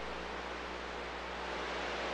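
CB radio receiver hissing with static on an open channel, no station transmitting, with a steady low hum underneath.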